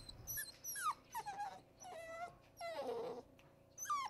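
Puppy whining and yipping: a string of short high calls that fall in pitch, with two longer whines about two and three seconds in.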